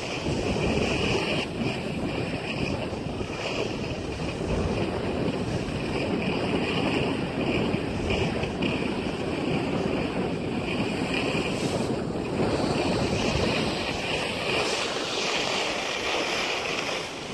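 Steady rushing of wind on the microphone, mixed with the hiss of sliding over packed snow.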